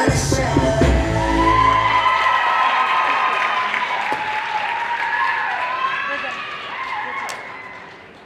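The dance routine's music ends on a final hit whose low chord rings out over the first two seconds, while the audience cheers, whoops and applauds. The cheering slowly fades toward the end.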